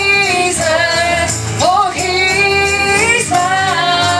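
Live gospel music: a woman singing a melody into a microphone over instrumental accompaniment with a steady bass line.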